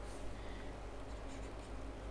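Faint scratching and tapping of a stylus writing on a drawing tablet, over a low steady hum.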